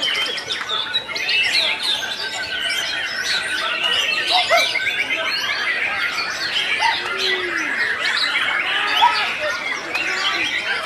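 Several caged white-rumped shamas (murai batu) singing at once: a dense, unbroken tangle of overlapping whistles, chirps and harsh notes.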